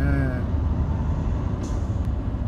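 Steady low rumble of a car's engine and tyres, heard from inside the cabin while moving slowly in congested freeway traffic.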